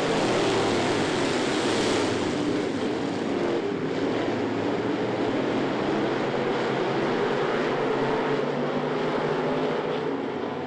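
Engines of a pack of dirt-track street stock race cars running at speed, a loud, steady blend of many engines. During the first two seconds one car passes close.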